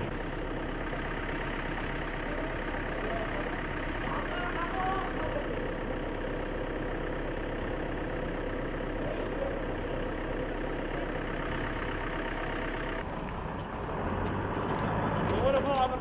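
Pickup truck engines running as the trucks drive slowly past, with indistinct men's voices in the background. The sound thins abruptly about thirteen seconds in, and voices come up near the end.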